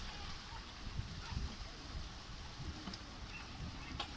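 Kayak paddles splashing and water sloshing around a cluster of kayaks, heard as a steady watery hiss, with wind buffeting the microphone in irregular low rumbles.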